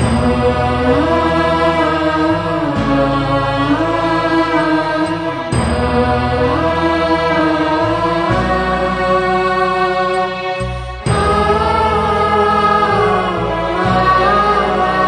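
A slow devotional hymn: a single voice sings long, gliding phrases over sustained low instrumental chords. A new phrase begins about every five and a half seconds.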